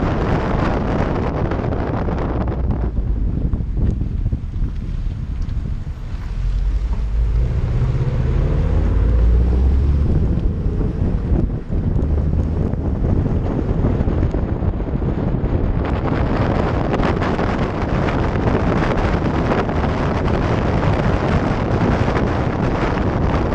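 Wind buffeting the microphone over the turbocharged flat-four engine and tyres of a 2015 Subaru WRX STI on the move. Partway through the wind noise eases and the engine is heard rising in pitch as the car accelerates; the wind noise comes back a few seconds before the end.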